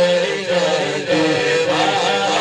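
Male voice singing a naat, a devotional Urdu poem, into a microphone over a sound system, in long drawn-out melodic notes.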